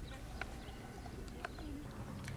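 Faint outdoor background with a few distant bird calls and some soft clicks.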